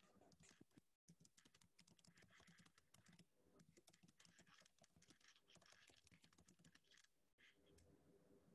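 Faint computer keyboard typing: rapid, irregular key clicks picked up over a video-call microphone, cutting out briefly about a second in.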